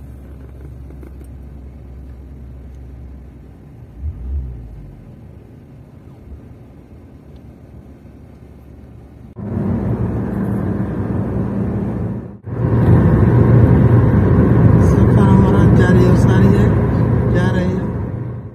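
Inside a Toyota Corolla's cabin: a low, steady rumble as the car rolls slowly. About nine seconds in it gives way to loud road and wind noise at motorway speed, with a short break about twelve seconds in.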